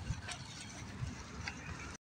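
Handling noise on a handheld phone microphone: a low uneven rumble with soft thumps and a few faint clicks.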